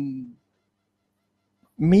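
Speech only: a man's long, drawn-out spoken word trails off, then about a second of silence before talking resumes near the end.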